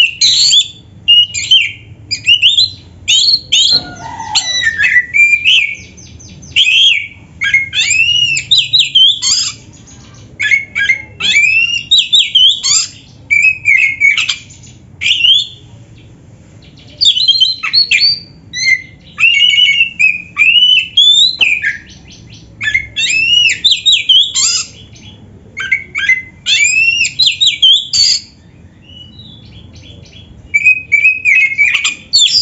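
Oriental magpie-robin (kacer) singing a loud, varied song of whistled phrases with quick rising and falling sweeps, packed with mimicked notes of other birds, in short runs with brief pauses about halfway through and near the end.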